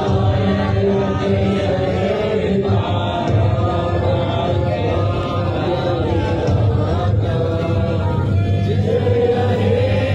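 A crowd of people singing together in unison, steady and unaccompanied, in the manner of a group chant or anthem.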